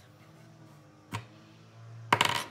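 A single light click of a small plastic base-ten unit cube tapped down on a table about a second in, over a faint steady low hum.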